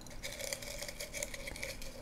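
Soft rustling of folded paper slips shifting inside a glass jar as it is tilted and turned, over faint, steady background music.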